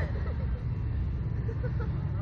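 Wind buffeting the microphone of a camera mounted on a slingshot ride's swinging capsule: a steady low rumble, with faint voices under it.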